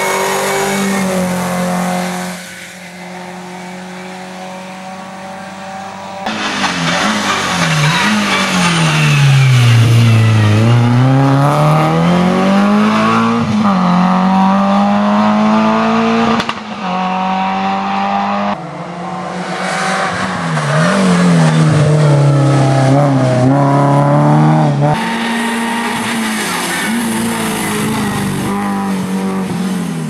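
Renault Clio RS race car's four-cylinder engine revving hard: the note drops as the car brakes into a bend and climbs again as it accelerates out. This happens several times over a series of passes.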